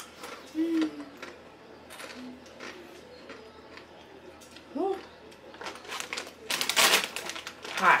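Crunching and chewing of crisp rolled tortilla chips, heard as many small clicks, broken by a few short closed-mouth hums reacting to the chili heat, one of them rising in pitch. Near the end the foil chip bag gives a loud crinkle as it is lifted.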